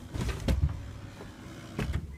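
Camera handling and movement noise inside a car: a low rumble with a few soft knocks, the clearest about half a second in and again near the end.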